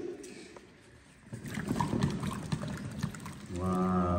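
Wet hands scrubbing and turning root tubers in a metal basin of water, with irregular soft splashing and knocking that starts about a second and a half in and gets busier. A voice comes in near the end.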